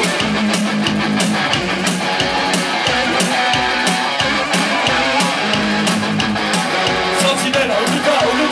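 Live synth-punk band playing an instrumental passage without vocals: electric guitar strummed over a synthesizer and a steady, fast drum-machine beat, loud throughout.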